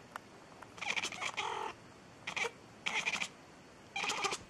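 A cat making several short calls in quick bursts, about a second in and again between two and three seconds in, one of them ending in a short pitched meow.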